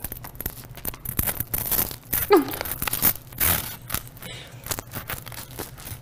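Serrated bread knife sawing back and forth through a toasted grilled cheese sandwich, the blade rasping and crunching through the crisp crust in quick, irregular strokes. The knife struggles to cut through.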